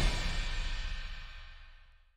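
The intro theme music of a web series ending, its last low chord ringing out and fading steadily away over about two seconds.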